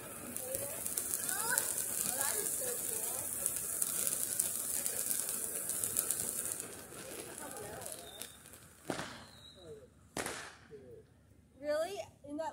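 Ground fountain firework spraying sparks: a steady high hiss with fine crackling for about six and a half seconds, then it dies out.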